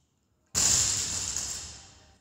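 Loaded barbell with bumper plates dropped from overhead after a thruster onto rubber gym flooring. There is a sudden crash about half a second in, then the plates and sleeves rattle and ring as it fades over about a second and a half.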